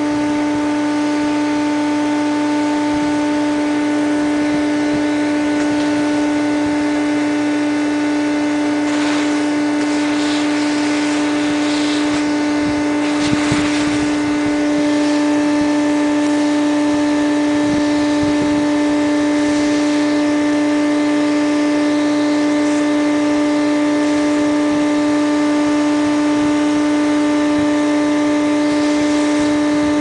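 Vacuum cleaner motor running steadily with a steady whine, drawing air through a long extension tube held at a yellow jacket nest entrance. A few brief rushing sounds come through the middle, and it grows a little louder about halfway.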